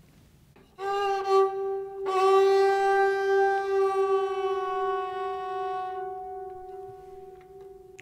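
Sarangi played with the bow: a single note starts about a second in, is bowed afresh at the same pitch a second later, and is held steadily, slowly fading away.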